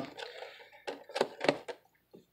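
Hands handling foil trading card packs: a few short crinkles and clicks in quick succession over faint rustling, about a second in.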